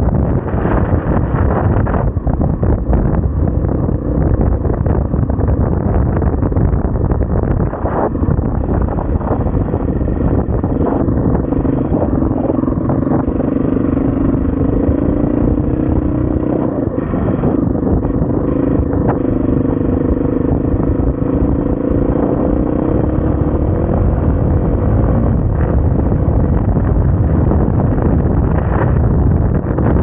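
SWM RS500R single-cylinder enduro motorcycle being ridden off-road, its engine running under dense, rough noise. From about ten seconds in the engine holds a steady speed for roughly a quarter of a minute, then shifts near the end.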